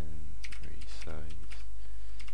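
Computer keyboard typing: an uneven run of key clicks as a shell command is typed. Two short hums from a voice come in, one at the start and one about a second in.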